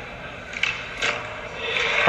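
Skateboard being popped and landed on a concrete floor for a flip trick: two sharp clacks about half a second apart, the tail snapping down and then the wheels landing. Crowd noise swells near the end.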